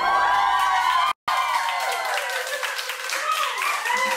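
A small crowd clapping and whooping in cheers at the end of a song, many voices calling over steady hand claps, with a brief break in the sound about a second in.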